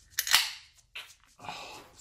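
A beer can's pull tab cracked open: a sharp pop with a short hiss of escaping carbonation that fades within half a second, then a smaller click about a second in.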